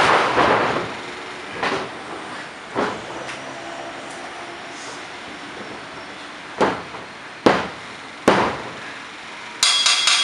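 Wrestlers' bodies hitting a wrestling ring's mat: a loud bump as a thrown wrestler lands at the start, a couple of lighter thuds, then three evenly spaced slaps on the mat about a second apart during a pin, like a three-count. Near the end comes a bright metallic ringing clatter.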